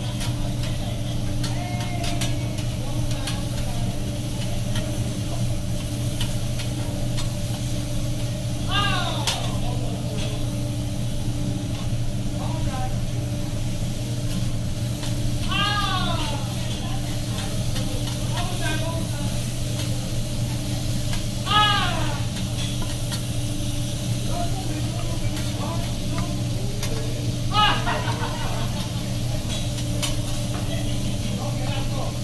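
Meat and vegetables sizzling on a hot teppanyaki steel griddle, with occasional light clicks and scrapes of the chef's metal spatula, over a steady low hum. Short voices call out a few times in the background.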